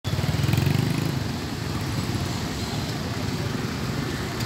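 Small motorcycle and scooter engines running as they ride past on a street. The nearest one is loudest in the first second, then the sound settles into a steady traffic drone.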